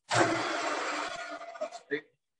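Three-horsepower metalworking lathe starting up, its spindle and chuck running at 800 rpm with a steady whirring hum that fades slightly over the next second and then cuts off abruptly.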